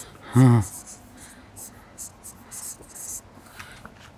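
Marker pen squeaking and scratching in a run of short strokes across a printed results board as a number is written. A single short word is spoken just after the start.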